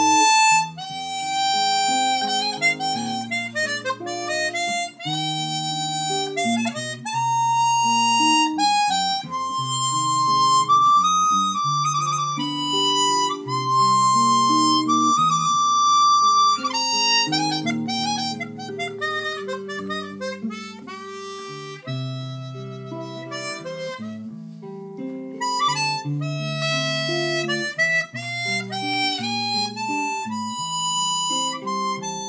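A chromatic harmonica playing a melody of held notes that rise and fall, over a lower accompaniment of sustained notes that change every second or two. The playing eases off to a softer passage past the middle.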